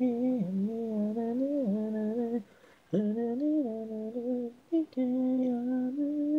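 Unaccompanied male singing voice, a solo lead vocal with no instruments, singing long held notes in smooth phrases. It breaks off for a breath about two and a half seconds in and briefly again near the end.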